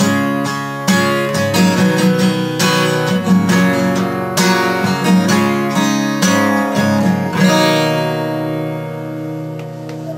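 Acoustic guitar strummed steadily, then a final chord, a little over seven seconds in, left to ring and fade out.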